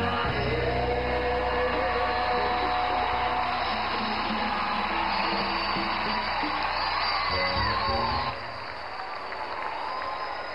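Live gospel worship music with band and singing; about eight seconds in the band drops out, leaving the congregation cheering and clapping.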